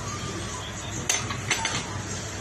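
Two or three light clicks of a metal pot lid against a stainless steel cooking pot, about a second in and again shortly after, over a steady background hum.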